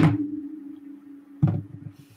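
A sharp click followed by a low ringing tone that fades away, then a soft dull knock about a second and a half in. These are handling sounds at a wooden bead loom.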